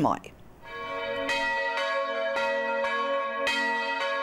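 Two church bells in a wooden klokkestoel being rung, with strikes about every half second or a little faster and the tones ringing on over one another. It starts a little under a second in.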